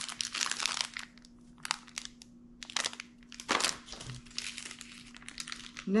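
Plastic snack wrappers and tissue paper crinkling as they are handled, in irregular bursts: busy at first, sparser in the middle, with a louder crackle about three and a half seconds in.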